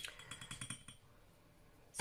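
Paintbrush clinking lightly against a glass water jar as it is rinsed: a quick run of small glassy clinks that stops about a second in.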